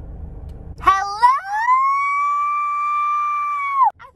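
A woman's voice holding one long, high-pitched note. It breaks in with a few short rising yelps about a second in, slides up, holds steady for nearly three seconds, then drops and stops abruptly. Before it there is a low rumble of car-cabin noise.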